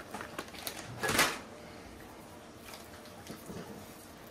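Mini chocolate chips clicking and pattering into a glass mixing bowl as they are shaken out of the bag, with a louder rustling rush about a second in. Then quieter scraping and faint ticks as the chips are stirred into thick batter.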